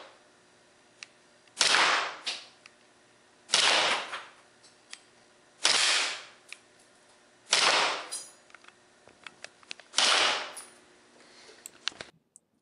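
Cybergun/VFC Smith & Wesson M&P 9C gas blowback airsoft pistol firing on full auto, in five short bursts about two seconds apart. Faint clicks fall between the bursts.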